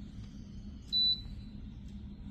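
Magic Mill food dehydrator's control panel giving one short, high beep about a second in as a button is pressed to set the temperature.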